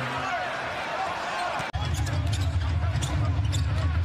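Basketball arena sound from a game broadcast: crowd noise with short sneaker squeaks on the court. An abrupt edit cut nearly two seconds in switches to a louder, steady low crowd rumble.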